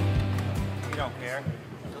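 Electric bass guitar: a low played note rings on and fades out after a run of notes, and men's voices come in about a second in.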